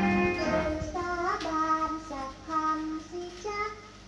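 A woman singing a Thai popular song with band accompaniment, played from an old vinyl record. An instrumental phrase ends and her voice comes in about a second in.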